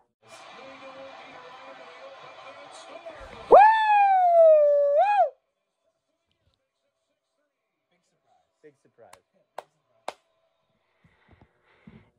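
A man's loud, high celebratory whoop, shooting up in pitch, sliding down and flicking up again at the end, about three and a half seconds in, over faint background sound. After it, near silence with a few soft clicks.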